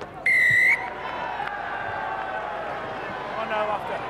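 Rugby referee's whistle blown once, a short shrill blast of about half a second, awarding a try after the TMO review. Stadium crowd noise follows.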